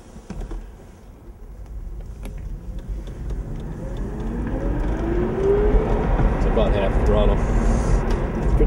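Dodge Circuit EV's electric drive accelerating from nearly a standstill, heard inside the cabin. A rising whine comes in about halfway through, over tyre and road rumble that grows steadily louder as the car picks up speed.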